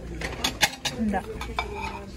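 Porcelain plates clinking as they are handled and set down: several sharp clinks in quick succession in the first second and another shortly after.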